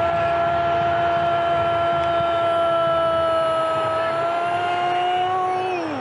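Football commentator's drawn-out 'gooool' goal call: one shouted note held for about six seconds, falling off at the end.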